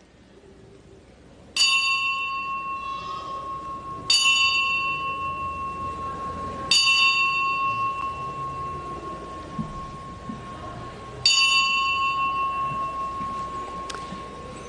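Altar bell struck four times in slow succession, the last after a longer pause, each stroke ringing on and fading. It marks the elevation of the consecrated host at Mass.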